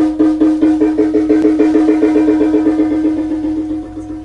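Electric guitar picking a single repeated note, speeding up from about three to about seven strikes a second, then dying away near the end.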